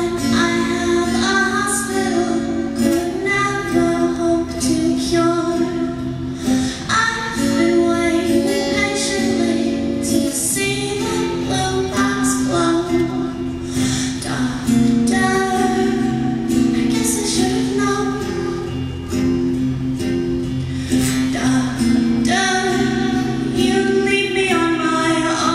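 A woman singing a slow, sad song with long held notes while strumming an acoustic guitar, amplified through a stage microphone.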